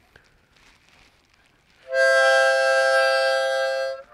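Harmonica: after about two seconds of faint handling noise, a loud chord of several notes is blown and held steady for about two seconds, then stops.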